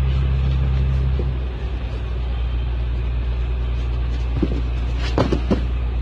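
Steady low rumble, with a few short thuds about five seconds in as bodies land on a padded mat in a grappling takedown.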